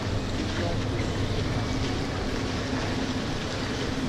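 Indoor swimming-pool hall ambience: a steady, reverberant hum and wash of water noise with indistinct background voices.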